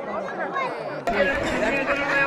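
Crowd chatter: many voices talking over one another. About halfway through, the chatter abruptly gets louder and fuller.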